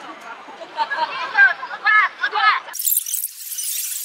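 Repeated high-pitched squeals, several short rising-and-falling calls in quick succession, over street crowd noise. About three seconds in they cut off abruptly, leaving only a thin high hiss.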